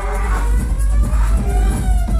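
Loud electronic dance music from a DJ's set over a club sound system, with heavy bass and synth tones sliding in pitch.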